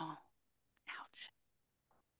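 Only speech: a quiet "oh, ouch" right at the start, then two faint whispered syllables about a second in, with dead silence between them.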